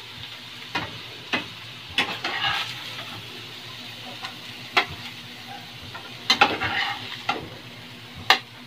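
Scrambled egg with sardines frying with a steady low sizzle in a frying pan, while a metal spatula scrapes and clicks against the pan at irregular intervals as the food is stirred and scooped out, with the scraping busiest about two and six seconds in.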